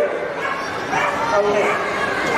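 A dog yipping and whining among people's voices.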